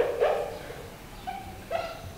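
Marker pen squeaking on a whiteboard while writing, in several short squeaks.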